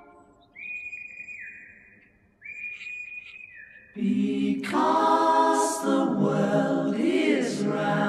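Two long whistled notes, each held high and then dropping away, followed about four seconds in by a group of voices singing a cappella in harmony.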